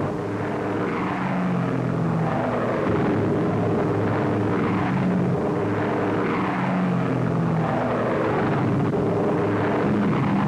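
Piston-engined propeller fighter planes running in flight, a steady engine drone whose pitch shifts a little every second or two.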